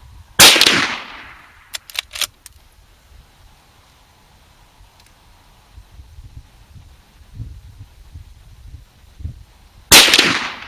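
Marlin 1894 lever-action carbine firing a .357 Magnum round, one loud report about half a second in that trails off over about half a second, followed a second or so later by a few sharp metallic clicks of the lever being worked to cycle the action. A second shot goes off right at the end.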